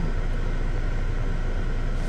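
Steady low rumble, with no speech over it.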